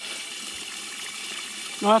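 Water running steadily from a supply hose into a livestock water tub fed through a float valve, an even rushing, splashing noise.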